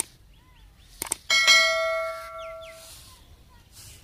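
Two quick mouse-click sound effects, then a bright bell ding that rings out and fades over about a second and a half: the sound effect of an on-screen subscribe-button animation.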